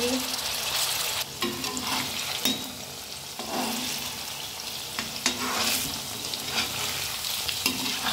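Paneer cubes sizzling as they shallow-fry in mustard oil in a metal kadhai, turning light golden brown. A perforated metal spatula scrapes and knocks against the pan several times as the cubes are turned.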